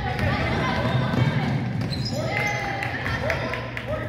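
Basketball being dribbled on a hardwood gym floor, bouncing repeatedly as the player brings it up the court.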